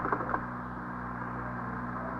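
Steady hum and hiss of an old, narrow-band radio transcription recording, with a brief voice fragment at the very start.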